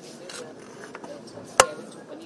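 A single sharp knock on a hard service counter about one and a half seconds in, with a brief ring after it, over low room noise.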